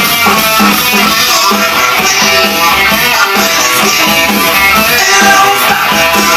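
Peavey Jack Daniels electric guitar with two humbuckers, played through an amplifier in a steady, rhythmic picked riff.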